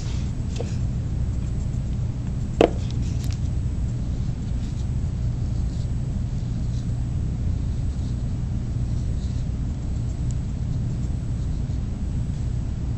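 Steady low background rumble, with one short sharp click about two and a half seconds in.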